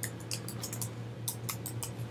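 Typing on a computer keyboard: a run of quick, irregular key clicks, over a steady low electrical hum.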